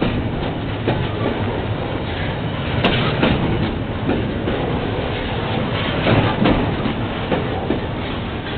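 Double-stack intermodal well cars rolling past: a steady rumble of steel wheels on rail, broken by irregular clicks and knocks, with one sharp click about three seconds in.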